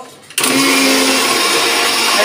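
Electric mixer grinder switched on about a third of a second in, then running at full speed with a loud, steady whine as it grinds green chillies.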